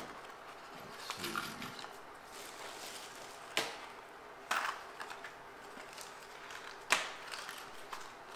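Small boxes of bolt hardware being handled on a workbench: faint rustling, with three sharp clicks a second or more apart.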